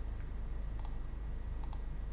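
Computer mouse button clicking three times, about a second apart, each click a quick double tick of press and release, over a low steady hum.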